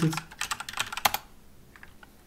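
Typing on a computer keyboard: a quick run of key presses over about the first second, then a last couple of taps.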